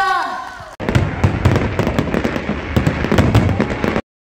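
The song's backing music ends on a fading held chord. After an abrupt cut, a loud, dense crackle of many sharp pops, like fireworks, runs until the sound stops suddenly at the end.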